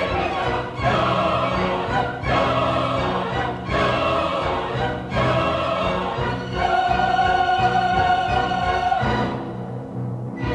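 Opera singers with orchestra, the voices in short phrases, then a high note held for about two and a half seconds before the music thins out near the end.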